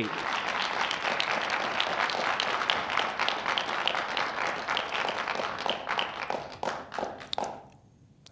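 Audience applauding, the clapping dying away about seven seconds in.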